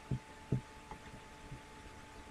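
Soft, low thumps of mouse clicks on a desk, picked up by the microphone. There are two strong ones in the first half-second and fainter ones later. A faint steady electrical hum runs underneath.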